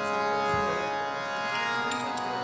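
Devotional kirtan music. A steady held chord sounds throughout, with a low drum stroke about half a second in and small cymbal clinks near the end.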